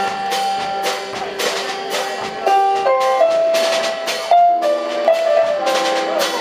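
Live instrumental jazz trio of keyboard, upright bass and drum kit playing. A held keyboard melody steps from note to note over steady drum and cymbal strokes.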